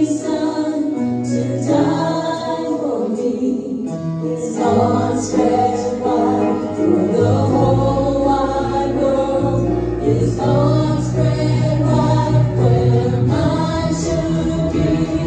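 A church worship team of mixed male and female voices singing a gospel song together, backed by piano and acoustic guitar. The bass fills in and the music grows fuller about five seconds in.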